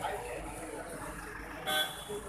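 A vehicle horn toots once, briefly, near the end, over steady street and crowd background noise.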